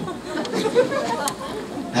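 A live audience murmuring and laughing, many voices overlapping with no single clear speaker.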